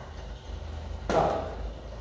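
Low steady room hum, with one short sudden sound about a second in that fades away.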